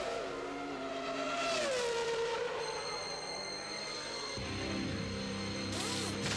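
Racing-car engine sound with its pitch sliding down, like a Formula One car passing, over the start of theme music. A steadier, deeper layer of music comes in about four seconds in, with a swell near the end.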